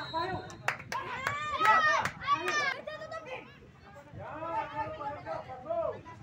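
Children's voices shouting and calling out around a youth football pitch, several voices overlapping, loudest in the first half and dropping off briefly in the middle.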